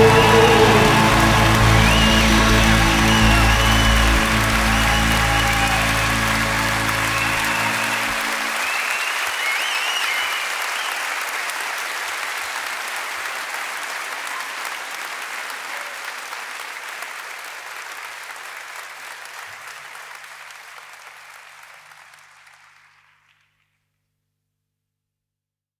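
Concert audience applauding at the end of a live song, over the band's last held chord, which stops about eight seconds in. The applause then fades out steadily until it is gone just before the end.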